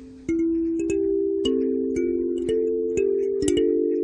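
Kalimba with metal tines plucked by the thumbs, playing a slow melody with chord tones: a held note fades out, then plucked notes resume about a third of a second in, about two a second, each ringing on into the next.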